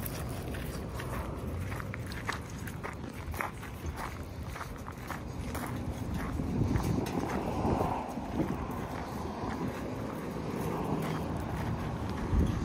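Footsteps of a person and a dog crunching on loose gravel, in irregular crackles. From about halfway a low rumble grows beneath them.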